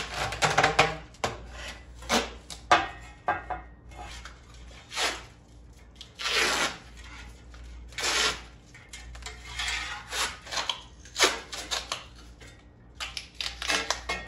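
A roll of tape being pulled off in repeated short rips as it is wound around a shovel handle, with small clicks from handling the handle between pulls.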